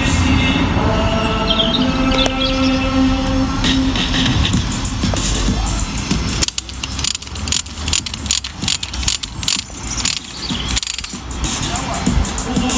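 Background music with held notes, then from about halfway in a run of rapid, irregular metallic clicking and rattling: a rebar tie-wire twisting tool spinning its hook as wire ties are twisted around the bars of a steel rebar cage.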